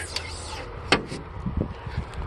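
The hood of a 1995 Lincoln Town Car limousine is lowered and shuts with a single sharp clunk about a second in, followed by a few lighter knocks.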